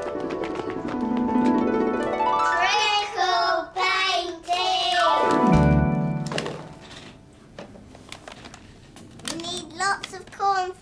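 A short musical jingle: a run of falling notes, then voices gliding up and down and ending in a long downward swoop with a low thud about six seconds in. After it, soft rustling and ticking of flour being poured into a plastic tub, and a child starts to speak near the end.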